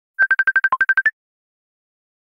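Smartphone alert tone for an incoming Messenger call: about a dozen rapid, short electronic beeps at one pitch, one dipping lower and the last a little higher, lasting about a second.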